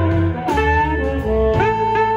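Live electric blues band playing an instrumental passage: a harmonica holds long notes, bending up into them, over electric guitars, bass and drums.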